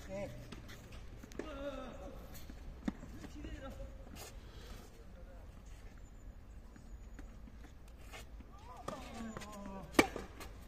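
Faint voices with a few single sharp knocks of a tennis ball on racket strings and clay court, spaced several seconds apart, one of them at a serve near the end.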